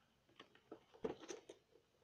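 Faint crinkles and taps of a cardboard-and-plastic toy box being handled, with a few short crackles about halfway through.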